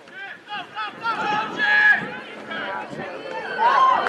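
Several people shouting at once over open-field play in a rugby match, with loud calls about two seconds in and again near the end.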